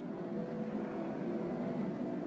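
Steady noise of a large three-bladed wind turbine running, with faint steady tones underneath.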